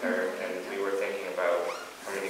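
A voice speaking, with a brief high squeak near the end.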